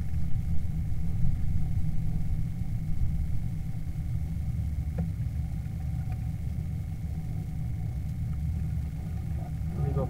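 A steady low rumble, like an engine running, with a faint steady high tone over it.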